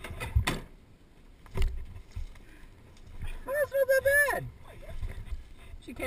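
Two sharp thumps about a second apart, then a person's voice calling out for about a second, over a low rumble.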